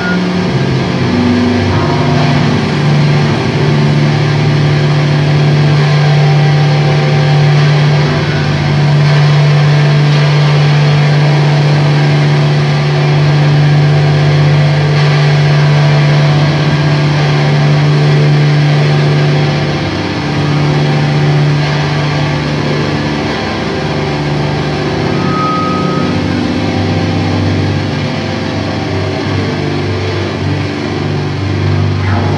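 Distorted electric guitar and bass holding a loud, sustained low drone through stage amplifiers, as an intro before the first song kicks in. The drone eases and shifts about two-thirds through, with a brief high feedback tone near the end.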